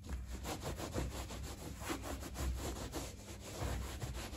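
A cloth rubbed back and forth over a wet leather boot, wiping off cleaner, in quick repeated strokes.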